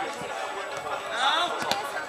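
Voices of players calling out across an open football pitch, with one sharp knock near the end.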